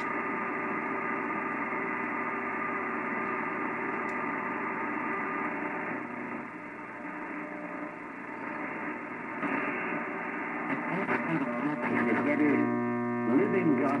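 AM broadcast-band audio from an SDRplay RSP2 receiver running CubicSDR, tuned across the band: steady static with hum for the first several seconds. About ten seconds in a station comes in, a man's voice preaching under heavy mains hum, which the owner puts down to a fluorescent light right above and a bare bundle of wire used as the antenna.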